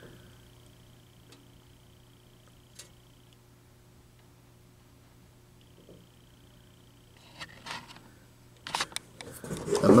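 Quiet room tone with a faint steady low hum, a single small click about three seconds in, and a few short handling knocks and rustles in the last couple of seconds.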